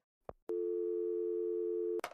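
A short click, then a telephone dial tone: a steady hum of two close low tones starting about half a second in and holding level until it cuts off abruptly. It is the sound of an open line after a call has been hung up.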